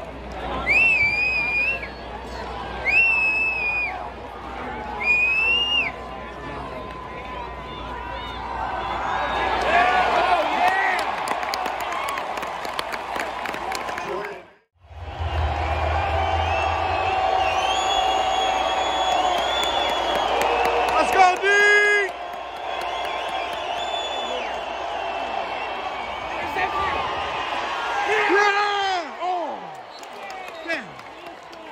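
Football stadium crowd cheering and yelling, with short shrill whoops repeated every couple of seconds near the start. The noise swells during a play and stays dense after a brief gap about halfway through.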